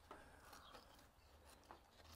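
Near silence: faint room tone with a small click near the end.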